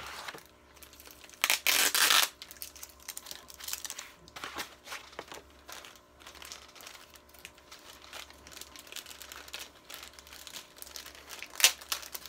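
Plastic packaging bags and a paper sleeve crinkling and rustling as an action figure's cape and accessories are unwrapped by hand, with a loud burst of rustling about one and a half seconds in and a sharp crackle near the end.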